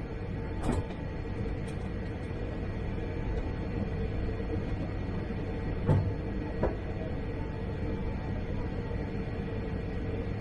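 Steady cabin hum of a Boeing 787-8 airliner taxiing, with one constant mid-pitched tone in it. A few short knocks break through: a small one under a second in, the loudest about six seconds in, and a lighter one just after.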